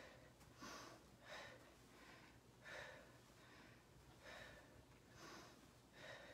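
Faint, rhythmic hard breathing of a person doing mountain climbers, about one breath every three-quarters of a second.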